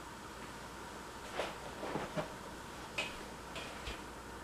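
A handful of soft knocks and rustles from handling, as a black padded fabric gig bag is picked up and lifted, over quiet room tone.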